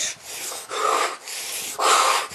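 A man breathing hard in a steady rhythm, about four forced breaths in and out in two seconds, imitating a runner's breathing.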